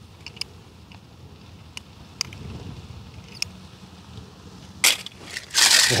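Handling of a die-cast toy car and a plastic basket of toy cars: scattered light clicks, then short loud rattles near the end as the toy goes into the basket among the other cars.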